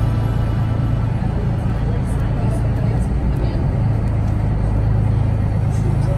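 Glass-bottom tour boat's engine running with a steady low drone, heard from inside the hull by the viewing windows.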